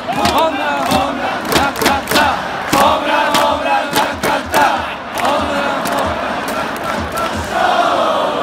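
A stadium crowd of Japanese baseball fans singing a batter's cheer song in unison, cut through by sharp hits every half second to a second or so.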